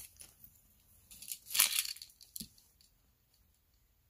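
A brief rustle and crinkle of jewelry and its card packaging being handled, lasting about a second, followed by a soft tap.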